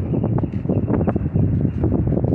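Wind buffeting the phone's microphone, a loud, continuous low rumble.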